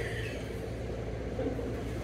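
Steady low background hum and rumble, with no playing or talk.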